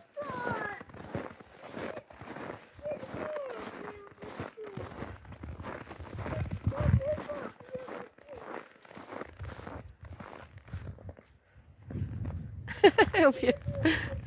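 Footsteps crunching through deep snow at a walk, with wavering voice-like sounds on and off and a louder burst of them near the end.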